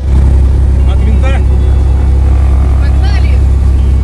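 Single-engine light aircraft's propeller engine running loud and steady at high power on the takeoff roll.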